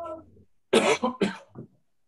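A person coughing: two sharp coughs about half a second apart, then a weaker one.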